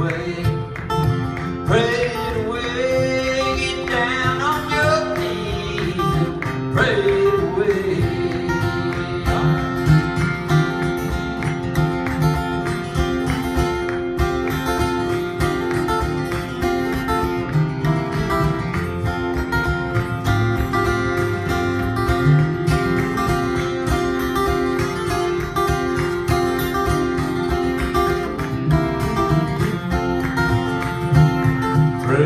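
Two acoustic guitars strumming and picking a country gospel song live, with a man singing in the first several seconds; after that the guitars carry on alone in an instrumental break.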